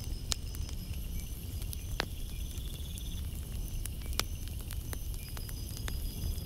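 Campfire crackling: scattered sharp pops and snaps over a steady low rumble, with faint high chirps behind.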